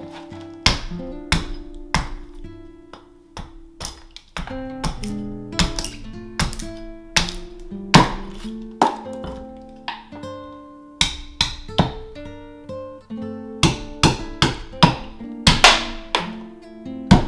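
Acoustic guitar music, plucked and strummed, with frequent sharp attacks.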